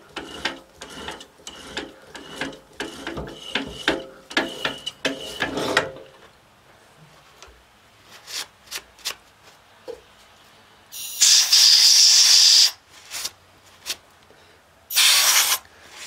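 A bottoming tap being turned by hand into a shallow hole in a cast iron cylinder flange: a run of ratcheting metal clicks and scrapes for about six seconds, then a few scattered clicks. Two loud hissing blasts of compressed air follow, blowing the chips out of the hole, the first about eleven seconds in and lasting over a second, the second shorter near the end.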